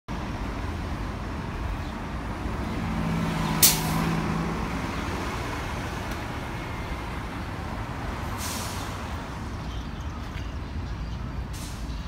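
City street traffic: a steady low rumble of passing vehicles. About three and a half seconds in, a low hum swells and a short sharp hiss, the loudest sound, cuts through it; softer hisses come about eight and a half and eleven and a half seconds in.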